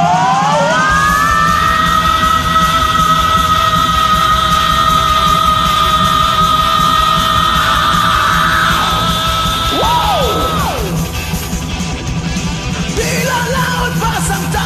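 Two male karaoke singers scream a sung note that slides up and is held high and steady for about ten seconds, then falls away, over a loud power metal backing track.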